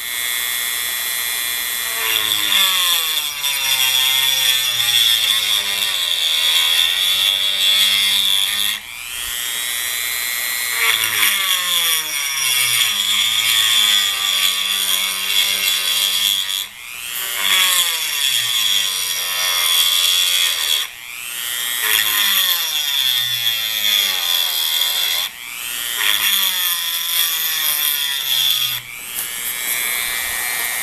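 Handheld rotary tool with a diamond-coated bit grinding into granite: a steady high-pitched motor whine with a grinding rasp. About five times the sound briefly drops and the pitch glides back up as the bit comes off the stone and bites in again.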